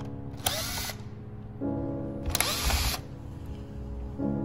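Cordless electric screwdriver running in two short bursts, about two seconds apart, at screws in a plastic car air-vent housing. Background music plays throughout.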